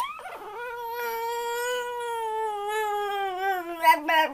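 A young child's long drawn-out vocal wail, one held note of about four seconds that slowly falls in pitch, breaking into shorter cries near the end.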